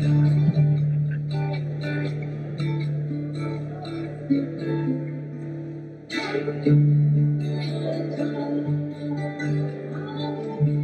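A live band playing an instrumental passage: a strummed acoustic guitar with an electric guitar, over sustained low notes.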